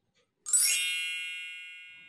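A bright chime sound effect: a single ding about half a second in, with a quick upward shimmer at its start. It then rings on in several high tones and fades slowly.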